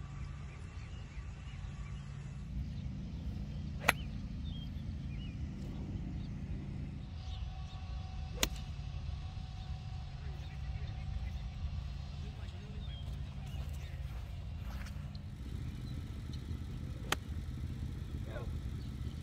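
Three sharp clicks of golf clubs striking balls, a few seconds apart: about four seconds in, near the middle, and near the end. A steady low rumble runs underneath.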